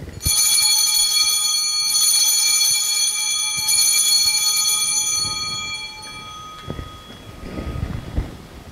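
Altar bell rung three times, about a second and a half apart, its bright, clear ringing fading away over a few seconds: the bell that marks the elevation of the host at the consecration of the Mass.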